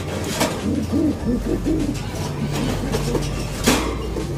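Racing pigeons cooing in a loft: a run of short, low, rolling coos. A brief laugh comes near the end.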